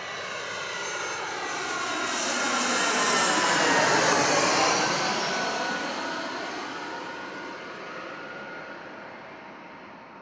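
Twin-engine jet airliner passing low overhead with its landing gear down. The engine noise swells to a peak about four seconds in and then fades away, its tones sliding down in pitch as it goes by.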